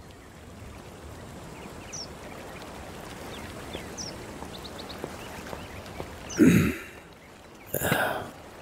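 Quiet garden ambience with a steady low background and a few faint, high bird chirps. About six and a half seconds in there is a short, loud sound, and another comes at the very end.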